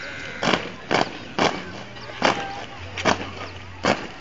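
A drill squad's boots stamping on brick paving in step while marching: seven sharp stamps, at a rough marching rhythm.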